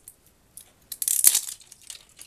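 Paper or plastic packaging crinkling and rustling as it is handled, in a crackly burst of about a second near the middle.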